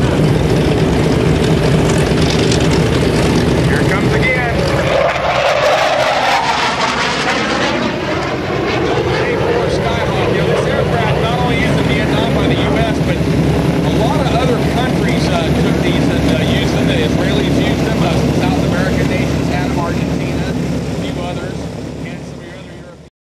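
A-4 Skyhawk jet making a loud pass, its engine noise sweeping in pitch as it goes by about five to eight seconds in, then dying away near the end.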